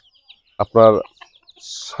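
A flock of backyard chickens with chicks: faint, high, short peeps and clucks throughout, with a brief rustling hiss near the end.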